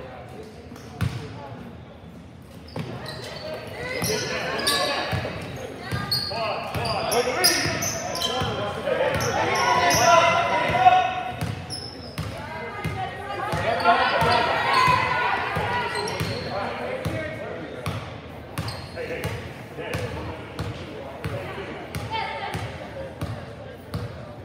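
Basketball bouncing on a hardwood gym floor during play, under many overlapping voices of players, coaches and spectators shouting and calling out, with the hall's echo. The voices swell to their loudest around the middle.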